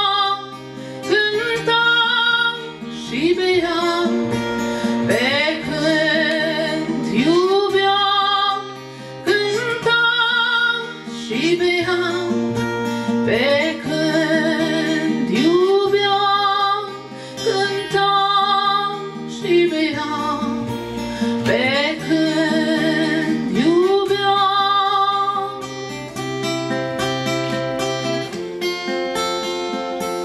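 A woman singing to her own strummed acoustic guitar, holding notes with vibrato and sliding up into them. Near the end the singing stops and the guitar plays on alone.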